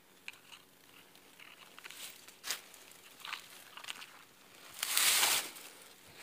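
Dry leaf litter and debris of a debris hut crackling and rustling as someone moves through it. There are scattered short crackles, then one louder, longer rustle about five seconds in.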